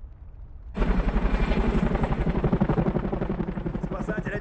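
Helicopter rotor chopping with a fast, even beat over engine noise as the helicopter hovers. It cuts in suddenly and loudly about a second in, after a low rumble.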